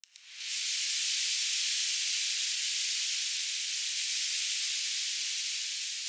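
A steady high hiss of filtered white noise, a synthesizer effect opening an electronic house track. It fades in within the first half-second, then holds even, easing off slightly toward the end, with no beat or melody under it.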